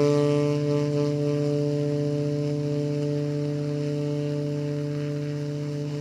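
Tenor saxophone holding one long low note, growing slowly softer.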